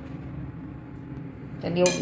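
Steel spoon clinking once against a steel mixing bowl near the end, after a stretch of only low background noise.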